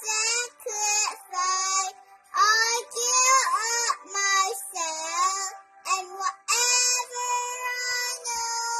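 A young girl singing a hymn solo and unaccompanied, in short phrases with brief breaths between them.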